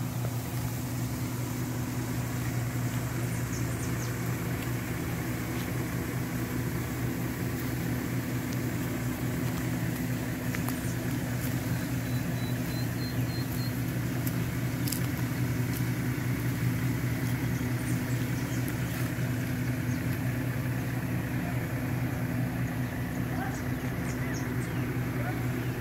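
A steady, unchanging low mechanical hum.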